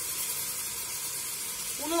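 Lamb and chopped onion sizzling steadily in an open aluminium pressure cooker, with freshly poured grated tomato on top; an even, high hiss.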